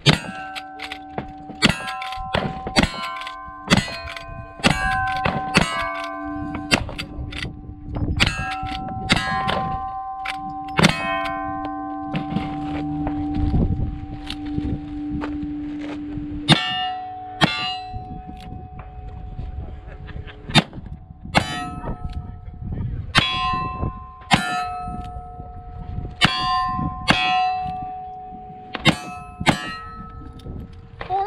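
Rapid gunfire at steel targets, each shot followed by the clang of a struck steel plate ringing on at a steady pitch: rifle shots first, then revolver shots, with a thinner spell of a few seconds midway while the guns are switched.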